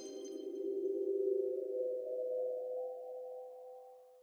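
Behringer DeepMind 12 analog polyphonic synthesizer sustaining a single pad tone that swells a little, then slowly fades away with its reverb tail.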